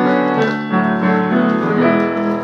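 Steinway piano being played: sustained chords ringing on, with new chords struck three times in two seconds.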